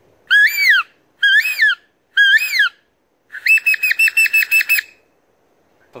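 A peppermint-tree leaf whistle, blown between the thumbs of cupped hands, imitating bird calls. It gives three separate rising-and-falling whistles, then a quick run of about eight short notes.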